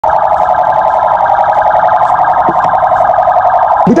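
A loud electronic alarm-like tone, held at one steady pitch and pulsing rapidly and evenly. It breaks off just before a man starts speaking at the end.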